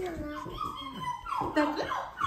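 A baby vocalizing in several short sounds that glide up and down in pitch.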